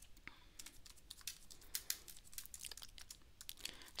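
Faint typing on a computer keyboard: a run of quick, irregular keystrokes.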